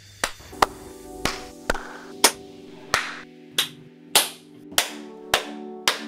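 A string of single hand claps, about one every 0.6 seconds, over music whose sustained notes come in about a second in.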